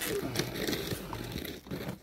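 Gorilla tape being wrapped and pressed around a pipe joint: a quiet, uneven crinkling and rustling of the tape under the hands.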